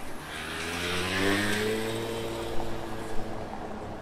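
A motor vehicle accelerating past: its engine pitch climbs over the first second or so and then holds steady, and the noise swells to its loudest about a second in before easing off. Two brief clicks come near the end.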